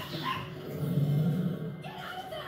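Animated dinosaurs calling from a TV soundtrack, over background music, heard through the TV's speaker: short high chirps at the start, then a louder low growl about a second in.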